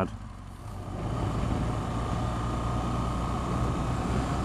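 2014 BMW R1200GS boxer-twin engine running under way, with road and wind noise. The sound builds up about a second in as the bike picks up speed, then holds steady.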